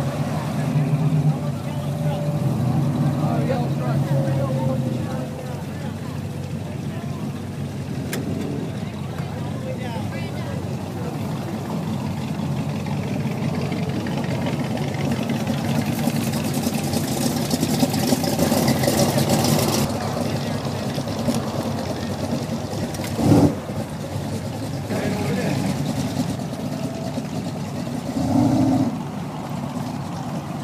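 Car engines running, with a car driving past about halfway through, over people talking. There is a short thump about three-quarters of the way through.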